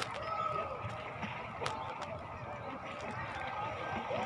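Distant, indistinct voices of people in a swimming pool, with a single sharp click about a second and a half in.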